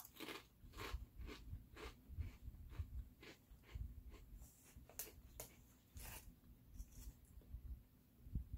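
Faint crunching of thin, crispy Cheez-It Snap'd crackers being chewed, in irregular crunches about two or three a second. About halfway through, the foil snack bag crinkles as another cracker is taken out.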